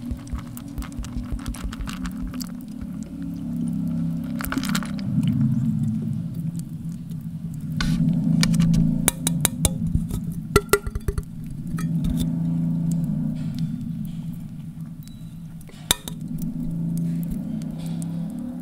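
Date milk poured onto chocolate cereal balls in a paper cup, followed by clicks and clinks from handling the milk pack and cup, sharpest about halfway through. A low steady drone runs underneath.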